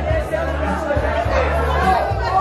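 Party band music with a bass line of held notes changing about every half second, under guests' voices and chatter.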